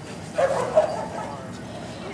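A Samoyed barking: two barks close together about half a second in, the second one louder.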